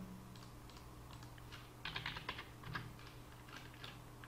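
Faint clicking of computer keys, a quick run of keystrokes about two seconds in and a few scattered clicks around it, as a value is entered and confirmed in the CAD program.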